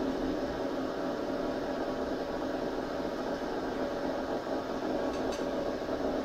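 Steady hiss with a faint hum from the electrophysiology recording rig, with one faint click about five seconds in.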